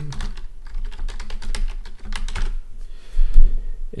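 Typing on a computer keyboard: a quick, irregular run of keystrokes entering an email address, with one louder low thump a little over three seconds in.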